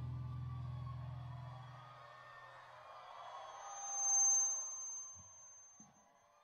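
The final chord of a rock band's electric bass and guitars rings out low and fades away over the first two seconds. A thin, steady high tone follows and swells briefly about four seconds in, then fades.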